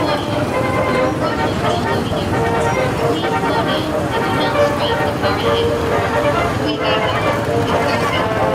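Small gasoline engines of Tomorrowland Speedway ride cars running steadily, mixed with crowd voices and music.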